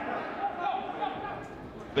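Low ambience of a crowdless football stadium, with faint distant voices.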